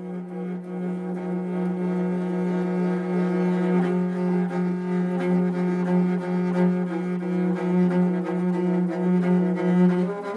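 Morin khuur (Mongolian horse-head fiddle) bowed on a sustained low note in a steady, pulsing rhythm of repeated bow strokes, played as the camel gallop rhythm.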